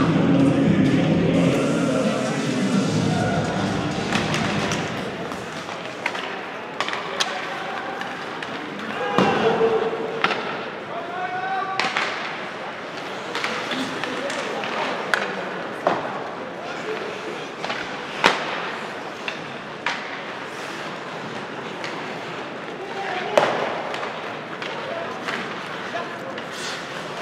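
Ice hockey arena sound during play: a murmur of spectators and indistinct shouting, with many sharp clacks and thuds from sticks, puck and boards. The crowd noise is louder for the first few seconds.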